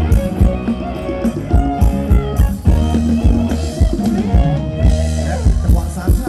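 Live band playing a Thai ramwong dance song: electric guitar and melody over a drum kit keeping a steady beat, with a heavy bass line.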